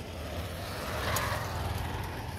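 A road vehicle passing, its engine and tyre noise swelling to a peak about a second in and then easing off over a steady low hum.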